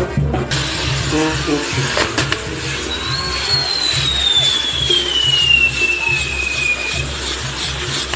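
Pyrotechnic spinning wheels on a castillo fireworks tower catching light, with a sudden dense spark hiss starting about half a second in. A long whistle falls slowly in pitch from about three seconds in. Music with a steady beat plays underneath.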